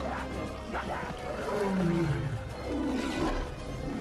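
Lions roaring over dramatic film music, with a long falling growl about two seconds in.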